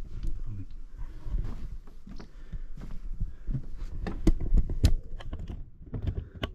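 Footsteps on wooden decking with knocks and rubbing from a handheld camera, irregular, the loudest knocks about four to five seconds in, over a low rumble of handling noise.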